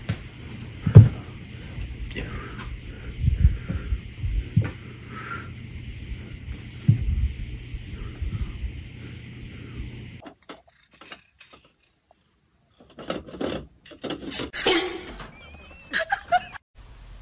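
Soft thumps and knocks as two cats swat and tussle on a window sill, over a steady background hum; the loudest thump comes about a second in. After a sudden cut near the middle, a few faint scuffs and, near the end, a short animal call with a rising pitch.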